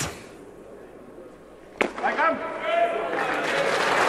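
Arena crowd reacting to a weightlifter's jerk. A sharp knock comes about two seconds in as the barbell is driven overhead, then shouts and cheering build toward the end.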